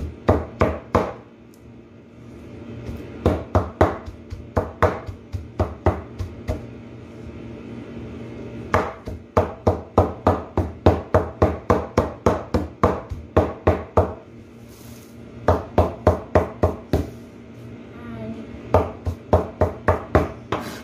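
Cleaver chopping jute mallow (saluyot) leaves finely on a board: runs of sharp knocks, about three a second, broken by short pauses.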